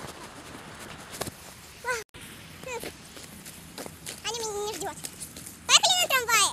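A girl's voice in short snatches, with a held, steady-pitched call in the second half and louder talk starting near the end. Beneath it, footsteps and the rustle of a phone handled against a jacket, with a brief dropout about two seconds in.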